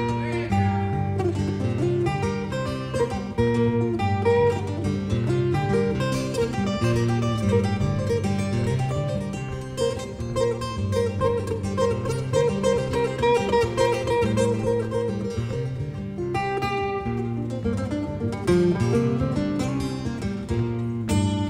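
Two acoustic guitars playing a desert-blues instrumental passage together: quick plucked melody lines over a repeating low bass pattern.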